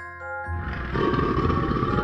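An animal roar sound effect, a rough growl that starts about half a second in and swells louder a moment later, over background music with held tones.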